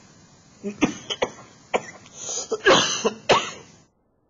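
A man coughing, a run of several coughs with the loudest about three seconds in. The sound then cuts out suddenly just before the end.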